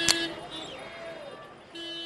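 A vehicle horn giving two short, steady toots at the same pitch, one at the start and one near the end, over faint street noise, with a click just after the start.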